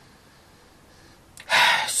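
A quiet room at first, then near the end one short, loud, sharp breath from a woman as she smells a perfume sample.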